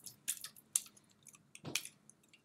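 Fingers picking at the ring pull of an unopened aluminium Coke can, giving a few small separate clicks and scrapes as the tab fails to lift.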